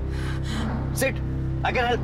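Two short snatches of a voice, about a second in and near the end, over a steady low background music drone.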